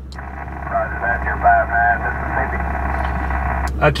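A distant ham's voice coming back over the Icom IC-7000 transceiver's speaker: thin, narrow-band single-sideband HF speech answering a contact, over a steady low hum.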